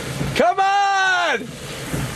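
A person's drawn-out shouted call, held on one pitch for about a second and falling off at the end, starting about half a second in, over steady rain and wind noise.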